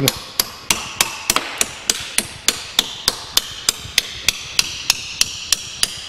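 Hammer tapping a steel bolt back into a Bradley trailer coupling head, driving the locating pin out of the draw tube: a steady run of sharp metallic taps, about three to four a second, with a light ring after each.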